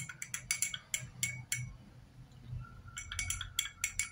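A metal spoon stirring a drink in a glass tumbler and clinking against the glass in quick runs of taps, with a pause of about a second in the middle.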